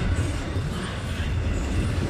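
Double-stack intermodal train of container well cars passing close by, a steady rumble of wheels on the rails as the train slows slightly.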